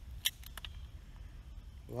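A crossbow being cocked and handled: one sharp click about a quarter of a second in, then a few fainter clicks over a low rumble of handling noise.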